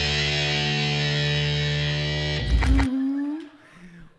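Edited-in music sting: one held chord with a hiss over it, ending in a short loud burst of noise about two and a half seconds in. After that it falls much quieter, apart from a brief rising voice sound.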